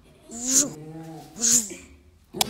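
A small West Highland white terrier making two short, breathy vocal sounds about a second apart, each a pitched whine with a sharp hissy edge.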